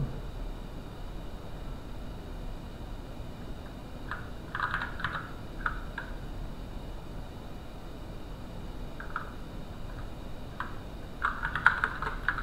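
Computer keyboard typing in short bursts: a quick run of keystrokes about four to five seconds in, a few single presses later on, and a denser run near the end.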